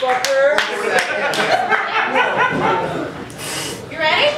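Performers' voices talking and exclaiming on stage, with a few hand claps near the start.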